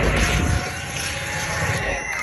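Live dubstep DJ set through a large concert sound system, heard from within the crowd. About half a second in, the bass cuts out, leaving a rushing, noisy synth build.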